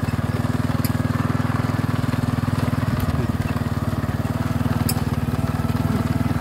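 Small motorcycle engine running steadily under way, with an even, fast firing pulse and a few sharp clicks.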